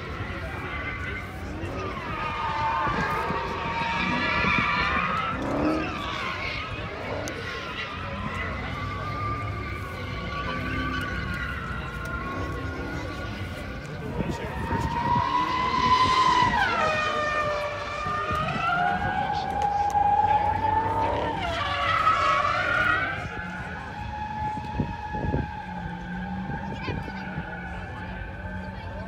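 Cars racing in the distance, their engines' pitch rising and falling over a few seconds at a time, several times, loudest about halfway through and again a little later, over the crowd rumble of a car event.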